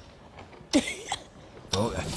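A handful of wet instant snow is thrown at a child: a sudden short splat about three-quarters of a second in, with a brief vocal sound from a child at the same moment. Voices start near the end.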